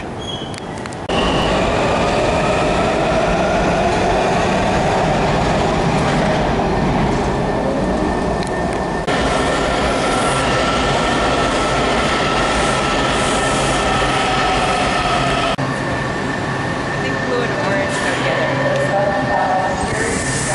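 Washington Metro subway train running into an underground station: a loud, steady rumble of wheels and running gear with high whining tones over it. The sound changes abruptly a few times.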